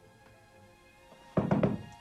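A quick run of knocks on a wooden door about one and a half seconds in, over soft background music with held tones.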